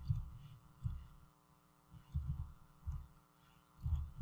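Faint, dull thumps of computer keys being pressed: a few spaced about a second apart, then a quicker run of typing near the end. A low steady electrical hum runs underneath.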